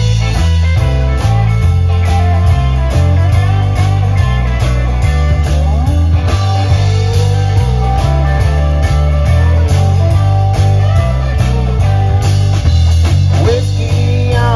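Live rock band playing through a PA: electric guitars over a heavy bass line and a steady drum beat.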